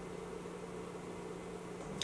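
Room tone: a steady low hum under a faint even hiss.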